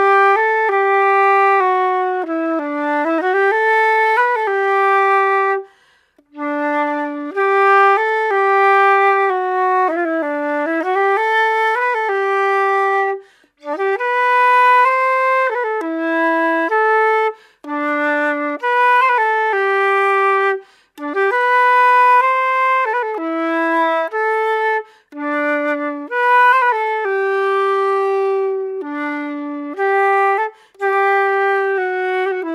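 Solo concert flute playing a waltz melody from the Estonian bagpipe repertoire, one clear melodic line in phrases broken by short pauses for breath.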